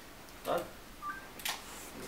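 A brief electronic beep of two quick notes, the second higher than the first, about a second in, heard between a man's spoken words.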